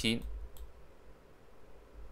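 A few faint computer-mouse clicks against low room noise.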